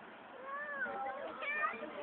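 A small child's voice calling faintly from a distance, a drawn-out, wavering "no" that rises and falls in pitch.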